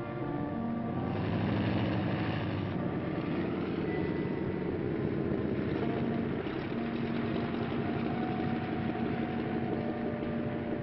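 A steady, loud, engine-like mechanical rumble that swells about a second in, with faint sustained tones running over it.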